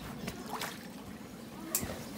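Faint splashing and trickling of water on an inflatable backyard water slide and its splash pool, with one brief sharp knock near the end.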